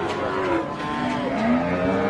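Busy market lane noise, led by a motor vehicle engine running, its pitch rising slightly near the end, over a mix of other overlapping sounds.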